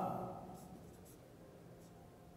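Faint strokes of a marker pen writing on a whiteboard, a few short scratches. The room's echo of the last spoken word dies away in the first half-second.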